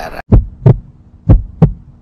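Logo-intro sound effect of deep, heartbeat-like double thumps: two pairs, about a second apart, over a faint steady hum.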